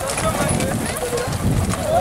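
Hooves of a tight group of white Camargue horses moving together over dry dirt, a jumble of thuds that grows louder near the end.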